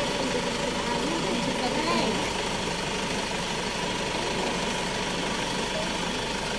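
A Mahindra SUV's engine idling steadily, with low voices in the background.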